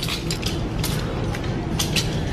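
Clothing being handled on a metal rack. A nylon jacket rustles, and the hangers click and rattle against the rail in a steady crackle of small clicks.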